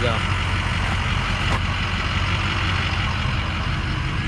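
The truck's 6.0-litre turbo diesel V8 is idling steadily, giving a constant low hum.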